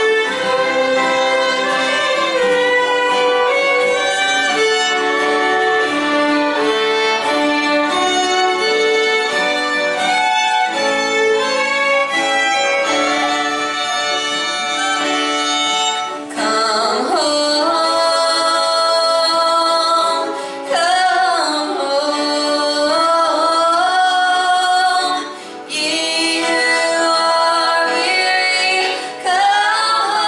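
Three fiddles playing a slow melody in harmony over strummed acoustic guitars, held notes at first and more sliding, bending lines from about halfway, with short breaths between phrases.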